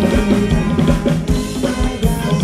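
Live band playing loud dance music through a PA, driven by a steady drum-kit beat with bass.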